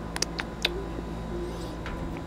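A man drinking beer from a pint glass, sipping and swallowing close to a clip-on microphone. A few small clicks come in the first second and one more near the end, over a faint steady hum.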